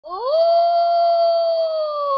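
A wolf howling: one long call that rises quickly at the start, holds steady, and begins to sink in pitch near the end.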